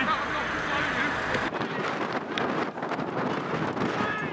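Wind buffeting the microphone, with players' distant shouts. The background changes abruptly about a second and a half in, and rough gusty noise follows.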